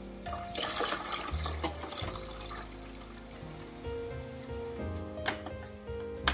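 Water pouring and splashing into the plastic reservoir of an AeroGarden Harvest Slim indoor garden during the first couple of seconds, over steady background music, with a couple of light clicks near the end.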